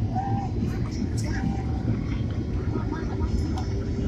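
Steady low rumble of engine and airflow noise inside the cabin of a Boeing 767 airliner on its approach descent.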